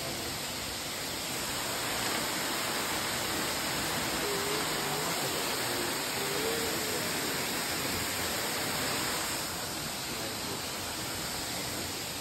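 Steady rush of a waterfall's falling water, an even roar, a little louder through the middle.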